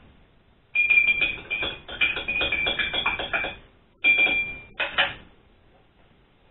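Telephone hold music playing through a mobile phone, in two phrases: one lasting about three seconds from just under a second in, then a shorter one at about four seconds.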